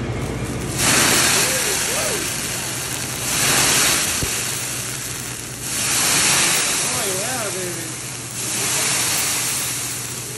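Liquid squirted from a squeeze bottle onto a hot hibachi griddle, hissing loudly as it flares into flame. This happens four times, each burst starting suddenly and fading over a couple of seconds.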